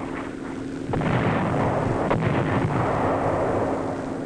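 Heavy gunfire of a naval bombardment: a sudden deep boom about a second in, running on as a continuous rumble, with another sharp report about two seconds in.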